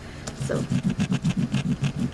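White wax crayon scrubbed rapidly back and forth over paper laid on a stencil, a fast even rhythm of about ten strokes a second starting about half a second in.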